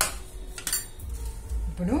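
Metal clinks against a stainless steel plate: one sharp clink, a second about a second later, each leaving a faint ring from the plate. A brief voice sound comes near the end.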